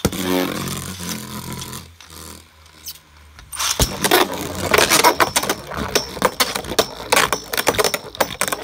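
Two Beyblade Burst spinning tops are launched into a clear plastic stadium and spin with a whir. From about halfway they clash over and over against each other and the stadium wall in rapid, sharp clicking hits and scrapes.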